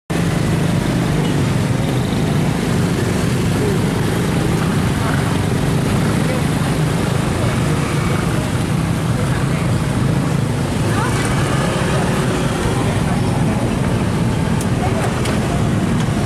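Steady roadside din: a continuous low traffic rumble with faint voices mixed in.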